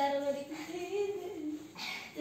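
A child singing a few drawn-out, wavering notes with no accompaniment.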